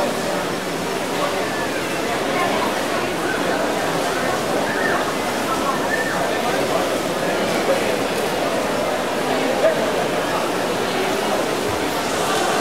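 Swimming-pool hall din: many voices talking at once over a steady wash of splashing water.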